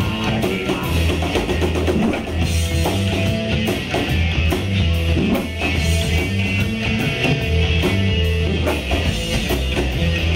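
Rock band playing live: drum kit, bass guitar and electric guitar at a steady driving beat, without vocals.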